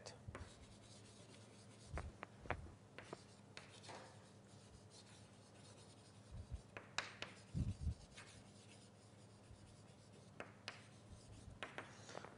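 Faint writing on a board in a small room: scattered light taps and short scratching strokes, with pauses between them.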